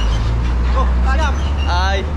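Several people's voices in short exclamations over a steady low rumble.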